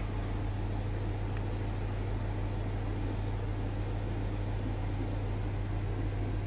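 Steady low hum with an even hiss over it, from the aquarium equipment in a fish room: air pumps running and air lifting through sponge filters.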